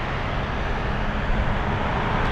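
Highway traffic: the steady noise of a passing vehicle's tyres and engine, growing slowly louder as it approaches.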